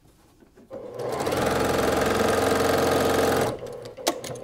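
Electric sewing machine stitching a quarter-inch seam through quilt fabric. It starts up just under a second in, runs at a steady speed, and stops about half a second before the end.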